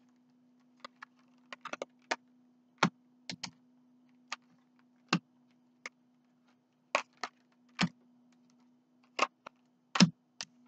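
Tarot and oracle cards being dealt and laid down on a table by hand: irregular sharp taps and snaps of card stock, some louder than others, over a steady low hum.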